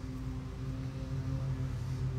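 A steady low mechanical hum that holds one pitch.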